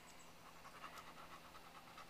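A dog panting faintly and quickly in the heat.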